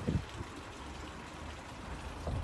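A man drinking from a mug: a couple of short low gulps right at the start, then a faint steady low outdoor rumble.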